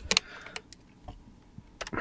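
A few sharp clicks from a computer mouse and keyboard: a strong double click just after the start, two fainter clicks about half a second in, and another pair near the end.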